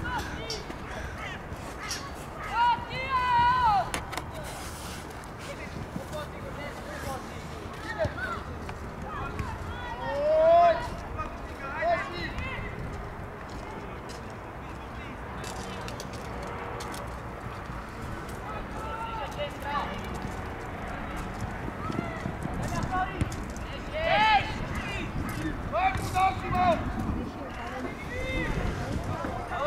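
Players and coaches shouting and calling across a football pitch during play: short, scattered calls over a steady background hum, the loudest shouts about three seconds in, around ten seconds in, and again near the end.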